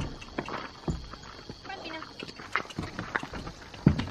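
A horse's hooves stepping on gravel and the trailer ramp, a run of scattered knocks, with one louder thump near the end.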